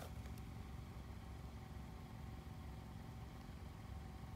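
Faint, steady low rumble of outdoor background noise, with a faint steady hum above it.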